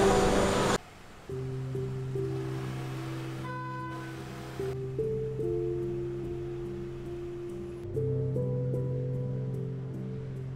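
Calm background music of long held chords over a low sustained bass note, the chords changing every second or two. Just under a second in, a loud, noisy room din cuts off abruptly before the music begins.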